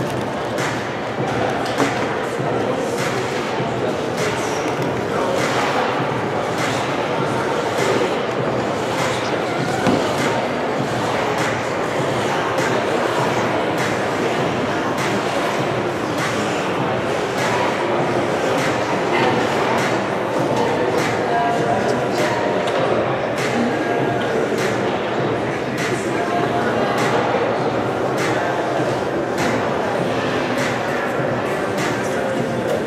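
Indistinct crowd chatter echoing in a large indoor ice arena, with scattered knocks and thumps.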